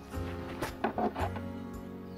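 Background music: sustained chords over a steady bass line, with a few short clicks a little way in.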